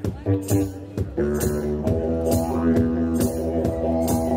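Didgeridoo playing a rhythmic, pulsing drone that settles about a second in into a steady sustained drone with a strong held overtone, with sharp rhythmic accents running on top.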